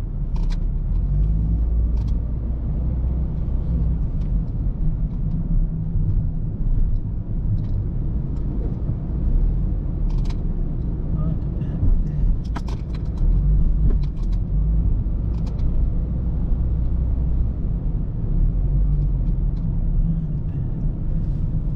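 Low, steady rumble of a car's engine and tyres heard from inside the cabin as it rolls slowly through a parking garage, with occasional light clicks and knocks.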